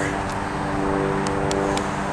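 A steady low mechanical hum, like an idling engine or motor, with a few faint clicks.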